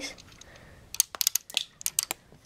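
Plastic Lego bricks clicking and rattling as an assembled model is handled and turned over: a quick run of sharp little clicks in the second half.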